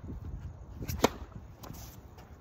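Tennis racket striking the ball on a serve: one sharp pop about a second in.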